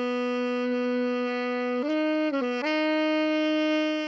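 Alto saxophone playing a slow melody: one long held note for about two seconds, then a step up in pitch, a brief dip, and another long held note.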